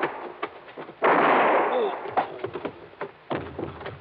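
Gunshot sound effect in an old radio drama: one sudden loud blast about a second in, followed by scattered knocks and a heavier thud near the end.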